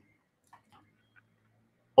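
Near silence with three faint clicks about half a second to a second in.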